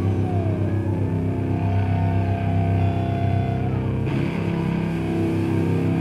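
Live rock band playing: electric guitars and bass hold sustained, droning notes over a heavy low end. A guitar note slides down near the start, a long note is held through the middle, and the chord changes about four seconds in.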